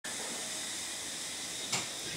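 Steady hiss of room tone and recording noise, with one short soft sound near the end.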